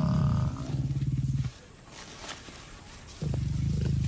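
Lions growling while they attack and pull down a Cape buffalo bull, a low rasping growl that breaks off about one and a half seconds in and starts again near the end.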